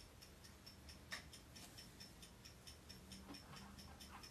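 Near silence with faint, quick clockwork ticking, about four ticks a second, and one soft click about a second in.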